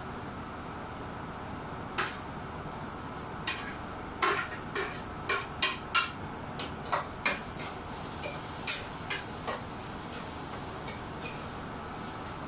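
Metal spoon clinking and tapping against a plate and pan as chopped ginger is knocked into the pan. About a dozen and a half sharp, irregular clinks, bunched in the middle.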